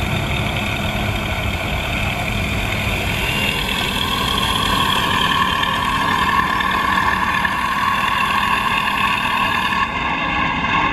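Radio-controlled scale WWI biplane's electric motor and propeller whining steadily as it taxis, over a low rumble; the whine grows stronger about halfway through.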